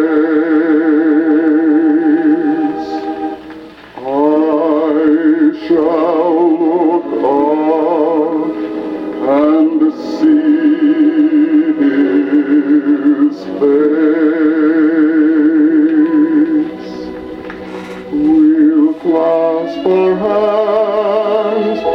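Sacred song playing from a phonograph record on a turntable: one solo singer with a wide vibrato, phrase after phrase with short breaks between.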